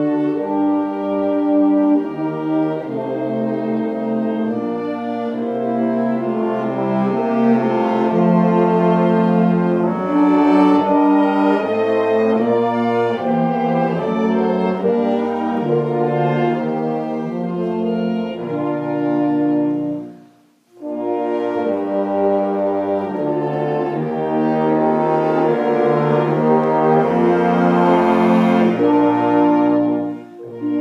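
Instrumental ensemble music with brass to the fore, playing sustained chords that are being conducted. The music breaks off briefly about two-thirds of the way through and then resumes.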